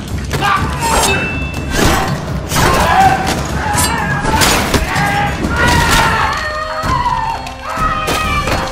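A violent struggle: repeated thuds and crashes with shouts and grunts, over dramatic background music.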